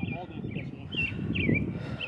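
A bird chirping several short, swooping notes over a low rumble of background noise.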